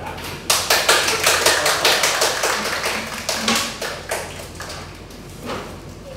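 A small group applauding, with many quick claps starting abruptly about half a second in and dying away by about four and a half seconds.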